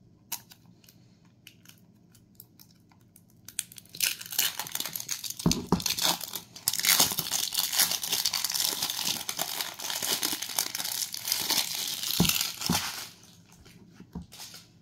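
Thin plastic packaging on a slime jar crinkling and tearing as it is pulled at, a dense crackling that starts about four seconds in and stops about a second before the end, after a few light clicks.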